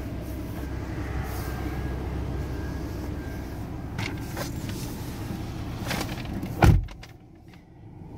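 A car door shutting with one heavy thump about two-thirds of the way through, cutting off a steady outdoor rumble so that only the quiet of the closed cabin remains. A few light clicks and rustles come before it.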